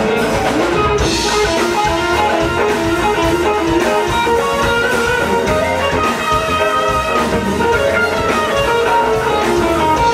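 Electric guitar played live, a steady run of short single notes stepping up and down, over a continuous low bass underneath.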